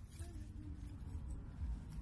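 Low rumble on the microphone with faint rustling of dry grass and dead leaves as a hand reaches in to pick a dandelion.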